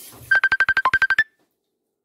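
A quick run of about a dozen short, high electronic beeps, about eleven a second, mostly on one pitch with one lower note near the middle and a slightly higher final one, like a phone's alert tone.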